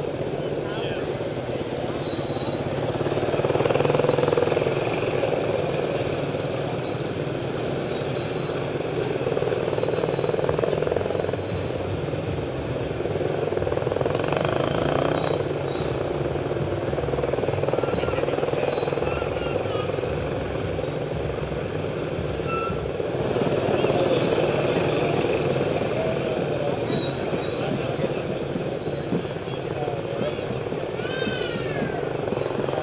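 Small parade motorcycles running at low speed, a steady engine drone that swells and fades every few seconds as the bikes ride close by, with voices mixed in.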